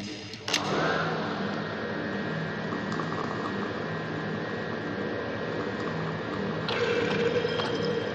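Experimental noise track: two sharp clicks, then a dense, machine-like noise texture with several steady droning tones that starts about half a second in. A brighter layer of high tones swells in near the end.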